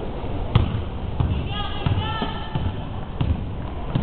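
A basketball dribbled on a hardwood gym floor, a bounce roughly every two-thirds of a second, the hardest about half a second in.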